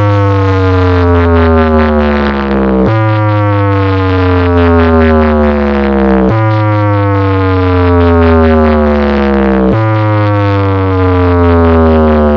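DJ sound-system speaker stack playing a test sound of a falling tone over heavy bass. The tone glides steadily down in pitch, then jumps back up and falls again, about every three and a half seconds.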